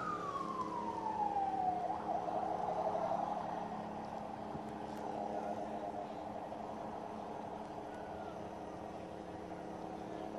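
Ambulance siren sliding down in pitch over about two seconds, then wavering at a lower pitch while it slowly fades, over a steady low hum.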